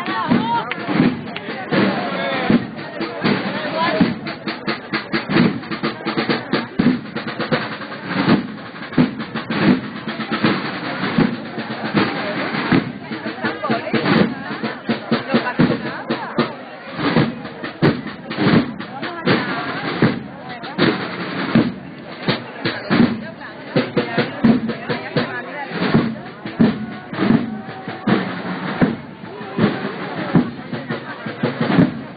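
Drums of a Holy Week procession band playing, snare drum among them, with people's voices mixed in.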